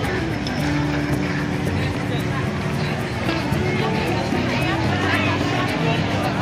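Busy street crowd: many people talking at once, with music playing over it in held, stepping low notes.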